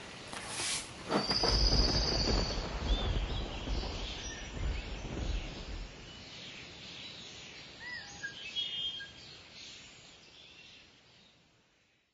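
A few handling knocks, then outdoor ambience: scattered short bird chirps and a brief trill over a low rumble that dies away about halfway through. It all fades out near the end.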